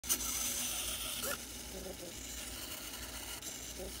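Small servo motors of a desktop pen-plotter robot arm moving the pen: a click at the start, a hiss lasting just over a second that cuts off suddenly, then short whines as the arm begins drawing.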